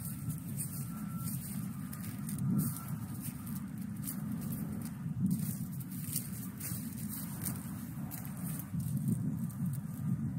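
Leaves and branches brushing and crackling against a handheld phone as it is pushed through shrubs, in many short irregular bursts, over a steady low rumble. A faint thin tone comes and goes in the first few seconds.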